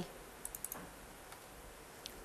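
A few faint, quick clicks of a computer mouse button, a cluster about half a second in and one more a little later.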